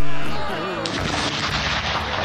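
Artillery piece firing a salute round about a second in: a sharp report followed by a long rolling echo. A sung devotional song fades out at the start.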